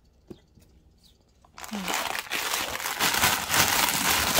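A small tap, then from about a second and a half in, loud continuous crinkling of plastic packaging as a bag of plastic-wrapped artificial succulents is handled and opened.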